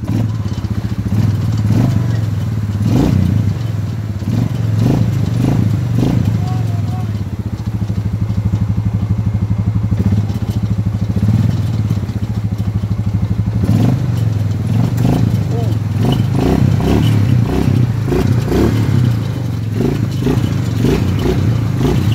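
A four-wheeler's (ATV's) engine running with a steady low drone, rising and falling a little with the throttle, with a few clunks, while the quad sits stuck in a mud rut.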